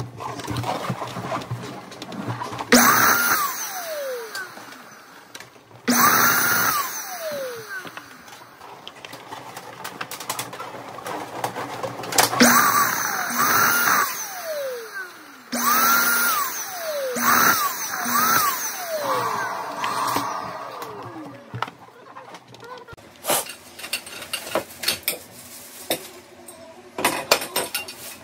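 Electric balloon inflator switched on in repeated bursts of a few seconds as balloons are filled, its motor whine climbing and then sinking slowly in pitch after each start. The bursts fall mostly in the first two-thirds, with quieter handling noise between them.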